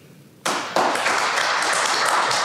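Audience applauding, starting suddenly about half a second in and holding steady.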